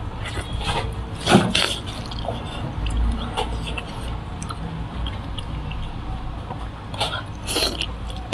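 Close-miked wet eating sounds: biting, sucking and chewing on a braised pork trotter, in short bursts a few seconds apart, over the steady low hum of an electric fan.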